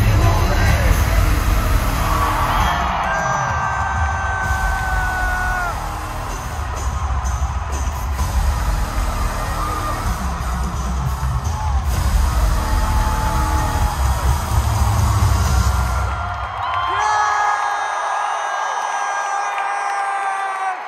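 Live concert music over a PA with heavy bass, recorded from inside the crowd, with fans whooping and cheering over it. About sixteen seconds in the bass cuts out, leaving held tones and crowd voices.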